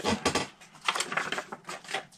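Craft supplies being handled on a tabletop: a few light clicks and knocks near the start, then a quick run of small clicks and rustles about a second in.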